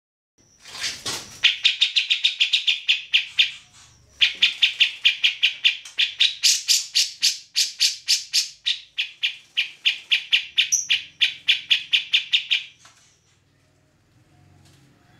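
Grey-cheeked bulbul (cucak jenggot) calling in a loud, rapid chatter of evenly repeated notes, about eight a second. It calls in two long bouts with a short break about four seconds in.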